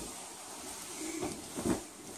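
Bedding rustling and swishing as a comforter and sheets are pulled and pushed off a bed, with a couple of soft bumps in the second half.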